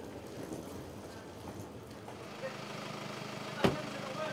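A car's engine idling, a steady low hum that comes in about two seconds in, and one sharp thump near the end from a car door being shut.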